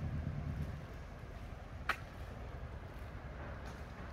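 Quiet night street ambience: the low hum of a vehicle engine fades out in the first second. A single sharp click comes about two seconds in.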